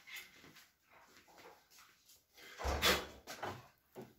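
Plastic parts of a split air conditioner's indoor unit being handled as its cleaned filters are fitted back: faint rustles and small knocks, with one louder clatter about three seconds in.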